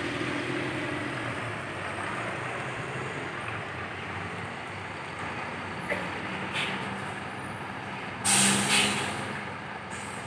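Mercedes-Benz coach's diesel engine running at low speed as the bus manoeuvres, a steady drone. About eight seconds in, a loud air-brake hiss comes in two quick pulses.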